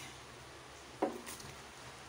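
Shredded cabbage being put into a wok of simmering vegetables and seafood: mostly quiet, with one short knock about halfway through.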